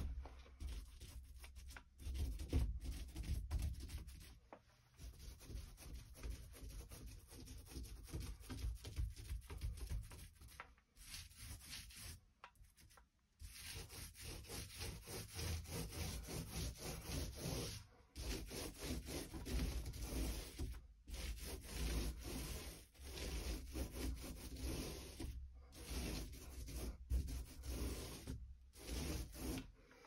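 Small microfiber paint roller rubbing back and forth over wet paint on a panel door, in repeated strokes with a few short pauses. In between, a paint brush is stroked along the door's panels.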